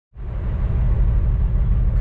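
The diesel engine of a 2008 Kenworth W900L semi truck idling, heard inside the cab: a steady low rumble that sets in after a moment's silence.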